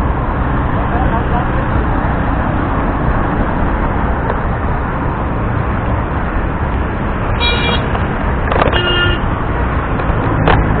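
Steady city road traffic noise heard from a bicycle, with two short vehicle horn honks about three-quarters of the way through.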